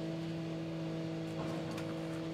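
Steady low machine hum, a drone with a few pitched overtones, from street-work machinery running outside.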